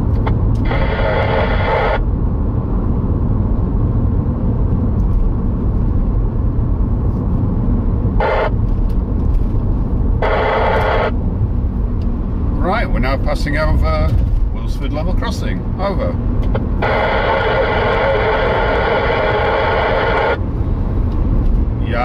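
Steady road and engine noise inside a moving car, with a CB radio loudspeaker cutting in several times. The transmissions are weak and noisy, the speech in them barely intelligible: the signal is fading with distance from the base station's makeshift aerial.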